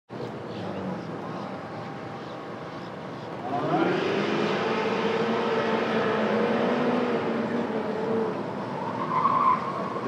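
Chevrolet C5 Corvette's V8 pulling away hard from the autocross start about three and a half seconds in, its revs rising, then holding steady as it runs through the cones and easing off near the end.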